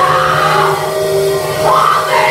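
A woman singing into a microphone over sustained keyboard chords, with a rising vocal slide near the end.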